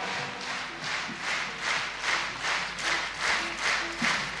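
Concert audience applauding in rhythmic unison, with about three claps a second, just after the song ends.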